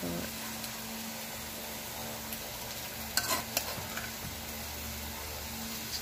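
Coconut-milk sauce simmering in a metal pot on the stove, a steady sizzle, while a metal spoon ladles it out and clinks sharply twice against the pot about three seconds in.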